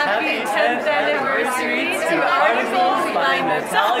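Chatter of several people talking at once, overlapping voices in a crowded lobby, with a laugh near the end.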